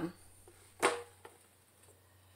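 Glass spice jars knocking together on a table as a hand reaches among them: one sharp clink a little under a second in, then a fainter tap.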